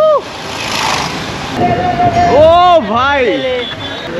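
Street traffic and wind noise while riding. From about halfway through come drawn-out vocal calls: a held note, then several rising-and-falling shouts.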